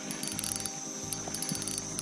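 Spinning reel being cranked with a hooked smallmouth bass on the line, its gears whirring with a fast run of small clicks.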